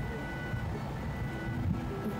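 A pause in talk: low, steady room rumble with a faint steady high whine, and a trace of a voice just before someone speaks.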